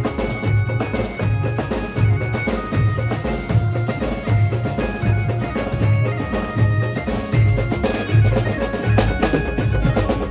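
Live band playing an instrumental passage through the stage sound system: a keyboard melody of long held notes over a steady, heavy drum beat of about two strokes a second.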